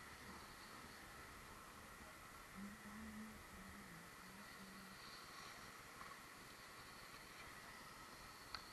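Near silence: a faint steady hiss, with a faint low hum for a couple of seconds partway through.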